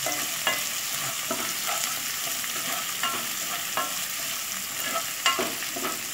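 Sliced onions, curry leaves and dried red chillies frying in hot oil in a nonstick pan, a steady sizzle. A spatula stirring them gives a few short taps and scrapes scattered throughout.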